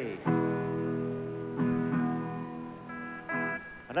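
Telecaster-style electric guitar strummed and left to ring: one chord about a quarter second in, a second chord about a second and a half in, then a couple of higher notes picked near the end.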